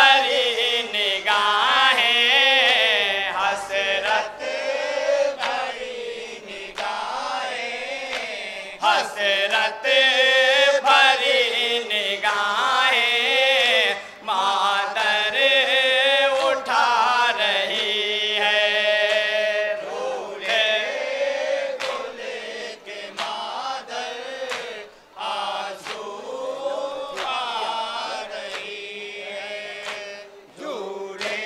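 A group of men chanting a nauha, a Muharram lament, into microphones, with sharp chest-beating strikes (matam) marking the beat throughout.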